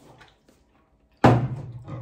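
Quiet, then a sudden thump a little over a second in, the loudest sound here, followed by a short 'uh-huh' from a voice.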